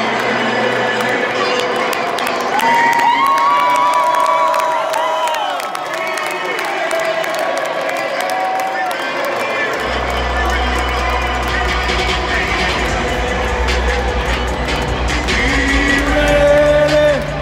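Stadium crowd cheering, with music and pitched singing or chanting over it. A low steady rumble comes in about ten seconds in.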